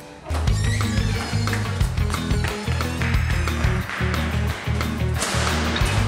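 Background music: a loud, bass-heavy track with a steady beat comes in abruptly just after the start, replacing quieter plucked-string music.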